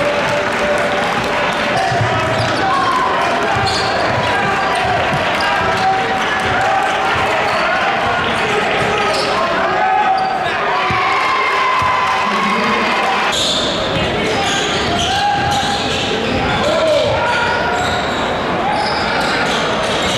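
Live game sound in a gym: many overlapping voices from the crowd and players, talking and shouting, with a basketball bouncing on the court.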